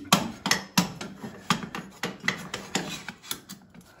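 A scissor jack being handled and fitted against a steel-tube kart chassis: a quick, irregular run of metal clicks and knocks.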